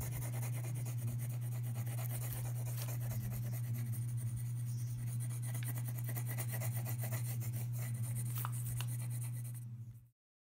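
Colored pencil scratching on paper in quick, continuous strokes as a background is shaded in, over a steady low hum.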